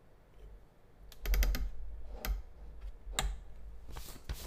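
Sharp clicks and light knocks of something handled at a desk: a quick run of about five clicks about a second in, then single clicks twice more, over dull low thumps.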